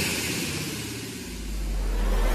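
Trailer sound effects: the noisy tail of a shattering crash fades out, and from a little past halfway a deep low rumble builds.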